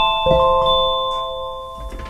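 A chord held on a software keyboard patch from Keyscape Creative in Omnisphere: several steady tones sounding together, one more note joining about a quarter second in, the whole chord slowly fading.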